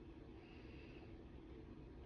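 Near silence: room tone with a faint low steady hum.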